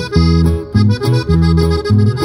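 Live cumbia on button accordion, electric bass and acoustic guitar: the accordion carries the melody over a steady, bouncing bass line in an instrumental passage.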